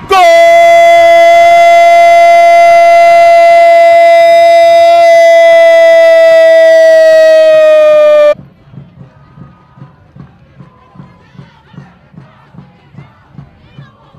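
Football commentator's drawn-out goal cry, 'gooool' held on one loud note for about eight seconds, sinking slightly in pitch before it cuts off abruptly. After it, a faint rhythmic thumping of about two beats a second.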